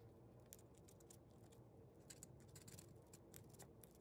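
Near silence, with faint scattered light ticks and scratches from a craft knife's tip working a polystyrene model wall.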